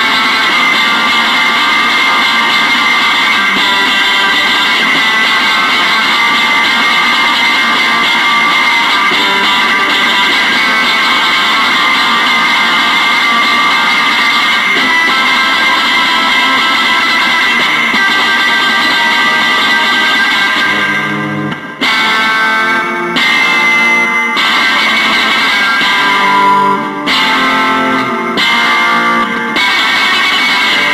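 Instrumental rock passage led by electric guitar through effects, playing a dense, sustained wash of sound. About two-thirds of the way through it breaks into separate struck chords with short gaps between them.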